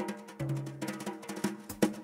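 Gypsy jazz big band music, a sparse opening passage: drum strokes and short accented notes, with a low held note about half a second in.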